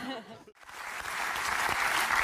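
Studio audience applauding: the clapping starts about half a second in and swells steadily.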